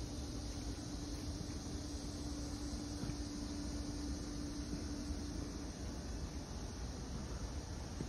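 Steady outdoor background noise, a hiss over a low rumble, with a faint steady hum that stops about six seconds in.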